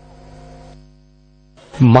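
Steady electrical hum, a low buzz made of several even tones, heard in a gap between voices and fading out by the middle; a man starts speaking near the end.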